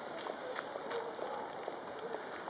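Hooves of a team of horses clip-clopping irregularly on the road at a walk, with people talking in the background.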